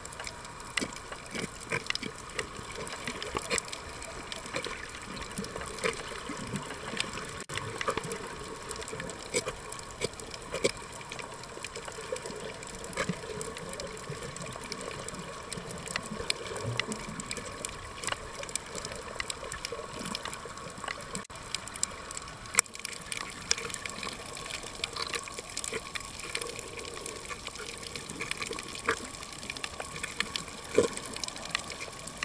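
Underwater ambience picked up by a submerged camera: a steady rushing water hiss dotted with frequent sharp clicks.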